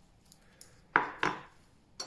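Light clatter of kitchenware: two sharp knocks about a second in and a click near the end.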